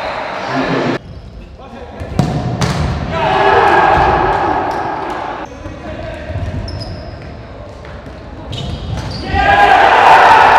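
A futsal ball being kicked on an indoor court, with players shouting in a large sports hall. Near the end a loud burst of shouting and cheering breaks out as a goal goes in.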